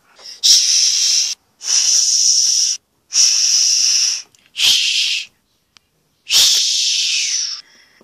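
Five loud hissing bursts, each about a second long, separated by short silences, with a soft thump at the start of the fourth and fifth.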